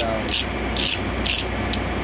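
Rhythmic scraping, about two short strokes a second, over a steady low machine hum.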